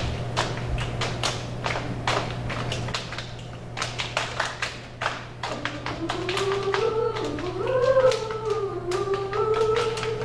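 Body percussion from a small a cappella group: hands patting chests and clapping in a steady rhythm. About halfway through, female voices come in singing a melody over the pats.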